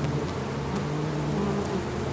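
Steady buzzing hum of a mass of honey bees at the hive, an even drone with a slight waver in pitch.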